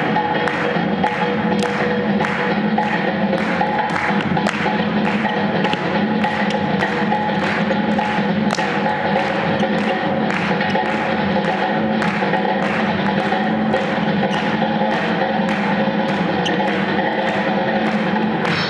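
Swing jazz playing for Lindy Hop dancing, with a steady beat of about two strokes a second.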